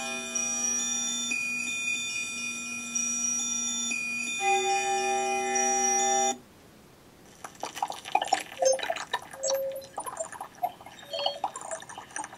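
Electroacoustic music from a sensor-driven MaxMSP instrument: sustained electronic tones in shifting chords that cut off suddenly about six seconds in. After a short gap a busy scatter of short drip-like and splashing water sounds begins.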